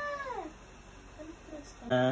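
A baby makes a long vocal sound, held on one pitch, then sliding down and fading out about half a second in. A brief low voice follows at the very end.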